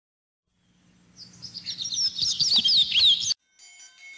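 Bird chirping: a quick run of high, down-slurred chirps and whistles that fades in, grows loud and then cuts off abruptly about three and a half seconds in. Faint music with ringing bell-like tones starts right after.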